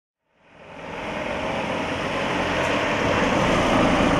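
A car approaching along the street and passing close by, its engine and tyre noise swelling gradually from about half a second in to its loudest near the end.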